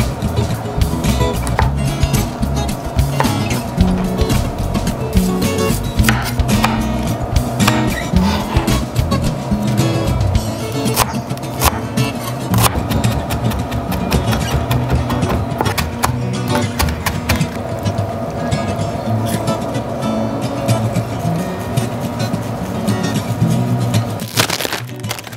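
Background music, with scattered sharp clicks throughout.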